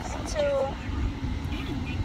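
Low, steady rumble of a car heard from inside its cabin, with a girl's voice briefly sounding about half a second in.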